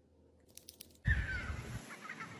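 A few faint clicks, then about halfway through an outdoor recording takes over: wind rumbling on the microphone and a bird calling once, its call falling slightly in pitch.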